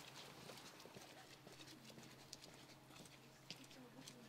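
Near silence with faint, irregular footsteps on wet paving.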